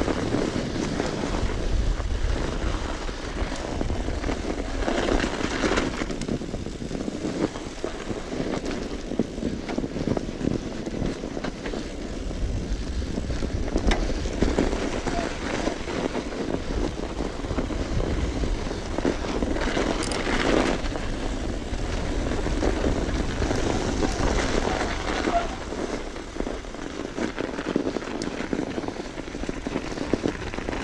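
Steady rushing noise of a mountain bike riding down a snow-covered road: tyres rolling over snow with wind buffeting the chest-mounted camera's microphone, swelling at times.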